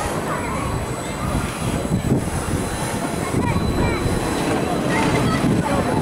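Steel roller coaster running on its track: a continuous rumble of wheels on steel rail, with short high squeals and voices mixed in.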